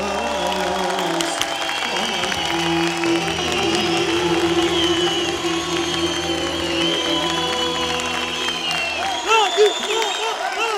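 Closing bars of a live Turkish arabesk song: a man sings long held notes over the band's sustained accompaniment, ending with a wide vibrato near the end, while the audience applauds.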